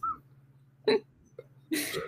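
A person's short, breathy laughs: one brief burst about a second in and a breathy exhale near the end, with quiet between.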